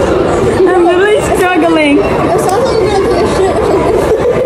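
Chatter of several people talking at once, with one voice standing out from about half a second to two seconds in.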